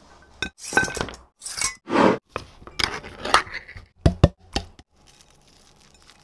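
Food tipped and dropped into a glass baking dish, cooked spaghetti slid in from a metal strainer among it. There is a run of short rustling pours and soft landings, then a few sharp clinks against the glass about four seconds in.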